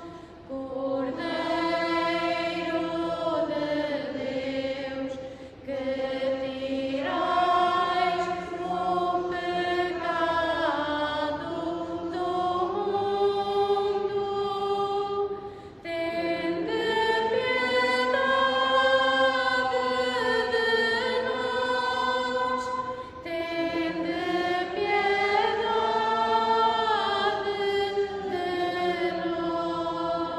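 Liturgical singing: a hymn or chant sung in long, held, gliding phrases, broken by a few short pauses between phrases.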